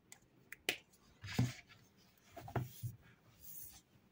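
Quiet desk handling: two sharp clicks, then paper rustling and a few soft knocks as a hardcover paper planner is handled, and a brushing sweep near the end as its cover swings shut.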